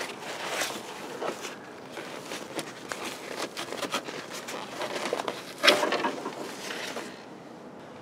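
Gloved hands pulling and rummaging at old material around a car's firewall: scattered rustles, crackles and scrapes, with one louder crackle a little before six seconds in.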